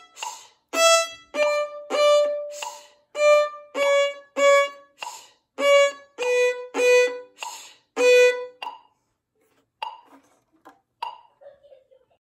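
Solo violin playing short, separate bowed notes on the E string, about two a second, stepping down in pitch from the open E in small steps. The playing stops about nine seconds in, leaving a few faint small sounds.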